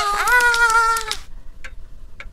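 High, voice-like cartoon sounds made of several overlapping pitched tones that slide and then hold, cutting off about a second in, followed by two faint clicks.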